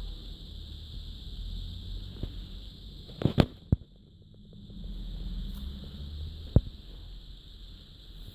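A few sharp clicks: a quick cluster about three seconds in and a single louder one near seven seconds, over a low rumble and a steady high hiss.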